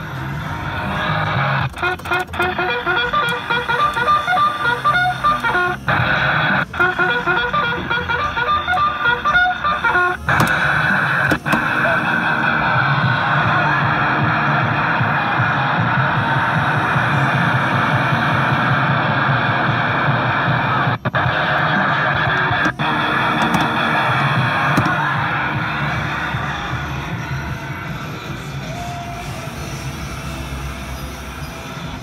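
Memo Park Jeep kiddie ride playing its ride-cycle music through its built-in speaker: guitar music for the first ten seconds or so, then a denser, steadier stretch that fades out near the end as the ride cycle winds down.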